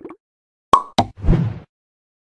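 Outro sound effects: two sharp pops close together, then a short dull thump.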